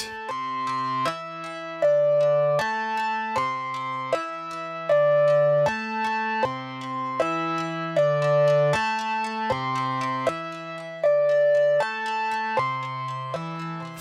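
Mutable Instruments Rings resonator module playing a repeating sequenced melody of plucked-sounding synth notes on C, E, D and A. Each note is struck several times in quick succession, a ratcheting effect from a sped-up clock gate.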